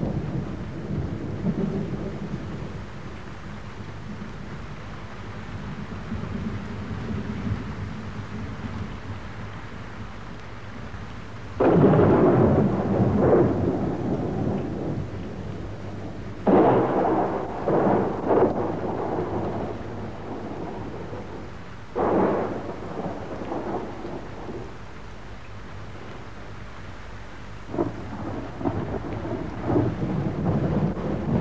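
Thunder: four sudden loud claps a few seconds apart, each rolling away, over a steady low rumble.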